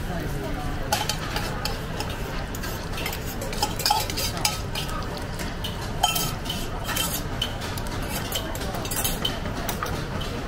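Beaten egg sizzling as it fries in hot oil in a metal wok, with a fork stirring and scraping in the pan and sharp metal clinks against the wok and a steel cup, a few of them about a second in and around four, six and nine seconds.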